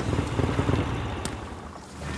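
Cruiser motorcycle engine running with a low rumble that dies down over the two seconds as the bike settles.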